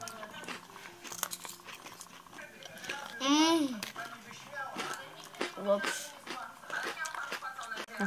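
Biscuits being bitten and chewed, with small clicks and crunches, and a wordless 'mmm' whose pitch rises and falls a little over three seconds in.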